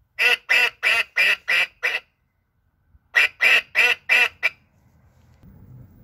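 Citroën 2CV's add-on horn, set off by remote control, sounding a quick run of six short honks at about three a second, then after a pause five more.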